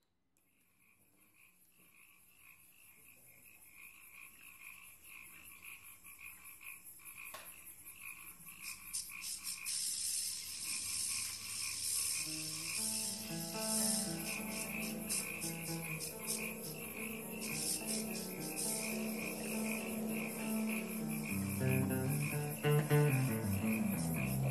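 A steady, rapidly pulsing high chirping, like frogs or crickets, fades in from silence and grows louder. From about halfway, a live band's bass and other pitched instrument notes come in under it as the opening number gets under way.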